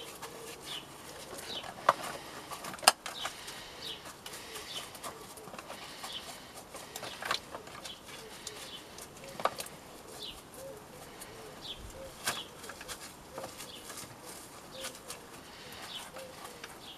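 Hands squeezing a water-soaked block of coco coir in a thin plastic tub, giving a few sharp clicks and crackles of the plastic, loudest about two and three seconds in. Birds chirp faintly in the background, with a pigeon cooing in the later half.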